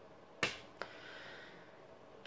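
A sharp click about half a second in, with a short ringing tail, and a fainter click about a third of a second later, over a faint steady room hum.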